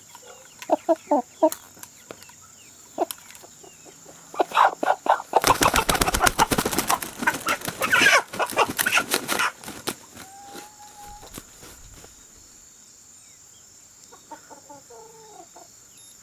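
Slow-growing white broiler chicken clucking and squawking as it is handled, with a burst of wing flapping lasting about four seconds midway through.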